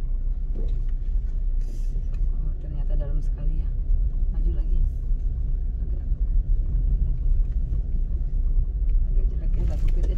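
Car running slowly over a rough dirt track, heard from inside the cabin: a steady low engine and tyre rumble with a few short knocks and rattles as it goes over ruts.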